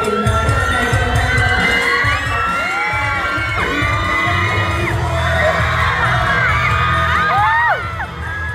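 Dance-pop music over a mall PA system with a crowd of fans screaming and cheering over it; several high shrieks rise and fall, the loudest near the end.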